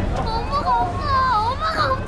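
A child crying out in a high, wavering, drawn-out voice, with no words, over the commotion of a fleeing crowd.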